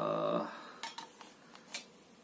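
Mora knife slid back into its plastic sheath: four light, sharp clicks and taps of blade and handle against the plastic, the last and crispest near the end.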